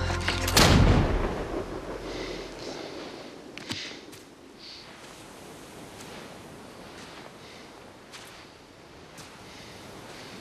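A single musket shot about half a second in, loud and sharp, its echo dying away over about two seconds as the music breaks off. Quieter ambience with a few faint clicks follows.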